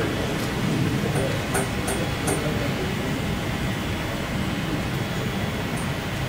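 Steady low rumble of room noise in a hall, with a few faint ticks in the first half.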